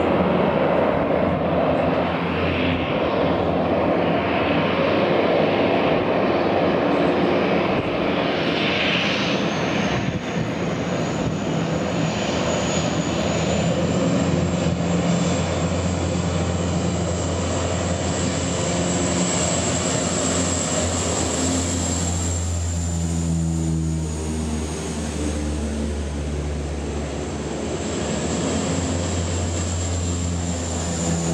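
Canadair amphibious water bombers' turboprop engines running under power as the planes skim low over the bay scooping water: a continuous low drone with a high turbine whine that rises in about ten seconds in. Over the last third the engine tone grows stronger and slides in pitch as a plane passes close.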